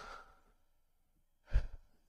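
A man sighs: a soft breath out that fades within half a second, followed by a short breathy sound about a second and a half in.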